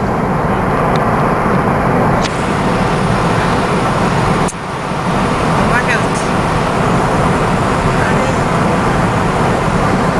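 Steady road and engine noise heard inside a car cruising at motorway speed, with two short dips in level about two and four and a half seconds in.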